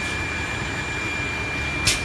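Steady running noise of a PVC fittings grooving machine, with a thin steady high tone over it and a short, sharp burst of hiss near the end.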